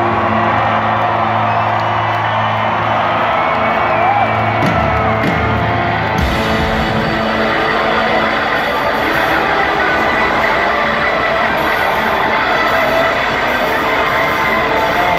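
A live rock band playing loud through a concert PA, recorded from within the crowd. Held low notes in the first half cut off about six seconds in, and the crowd cheers and whoops over the sound.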